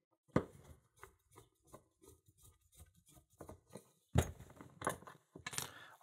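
Screwdriver backing out the small, worn screws that hold the actuator on the back of an old brass lock cylinder: a sharp metallic click about half a second in, then a string of faint ticks, and a few louder clinks and clatters near the end.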